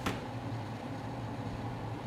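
Room tone: a steady low hum with faint even noise, and one short click right at the start.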